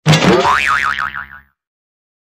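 A cartoon 'boing' sound effect: a springy tone that starts suddenly, sweeps up in pitch, then wobbles up and down several times before cutting off about a second and a half in.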